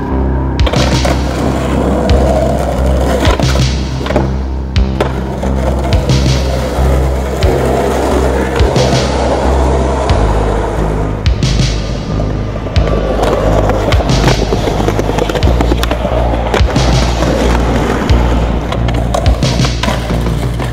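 Skateboard wheels rolling on concrete with sharp clacks of the board popping and landing, over a synth music track with a steady bass line that shifts twice.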